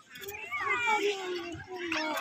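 A young child whining in a drawn-out, high-pitched voice that slowly falls in pitch.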